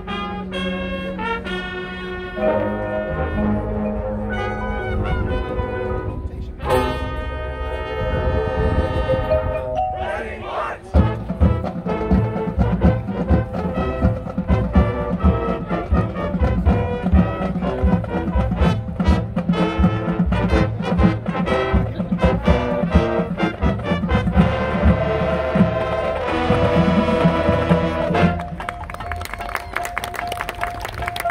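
Marching band playing: sustained brass chords, then percussion comes in about eleven seconds in with fast, even strokes under the held brass, and near the end the texture thins to a single held note.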